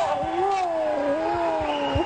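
A single voice holding one long wavering note that slides up and down in pitch. A few low thumps come through under it.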